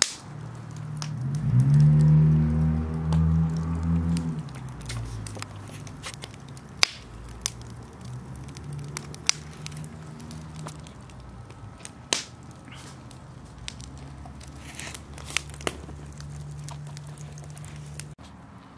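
Wood fire in a fire pit crackling, with irregular sharp pops throughout. Under it a low hum swells about a second in, is loudest for the next few seconds, then carries on faintly.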